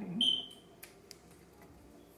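A short, high electronic beep from the computerized Singer sewing machine, followed by two faint clicks.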